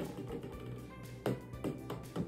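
Plastic balls knocking into a wooden tic-tac-toe tray, a few sharp taps, over steady background music.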